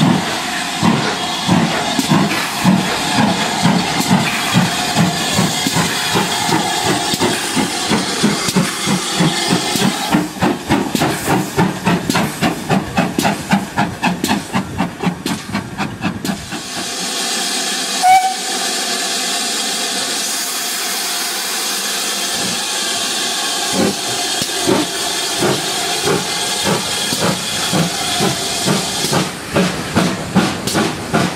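Steam locomotive exhaust beats as a train pulls away, the beats quickening over the first half. After a break comes a steady hiss of steam with a brief whistle about 18 seconds in, then slow exhaust beats start again near the end.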